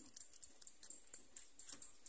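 Faint, irregular small clicks from handling a steel tape measure, its blade and hook shifting against a cut PVC pipe template.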